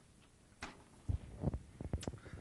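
Quiet room tone, then several soft, low thumps in the second half.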